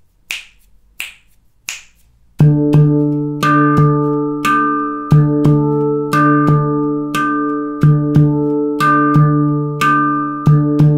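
Three finger snaps, about 0.7 s apart, count in. From about two and a half seconds in, a handpan plays the Baladi groove in a steady, even rhythm. Deep doum strokes on the central ding note alternate with higher tek strokes on the outer notes, and each note rings on.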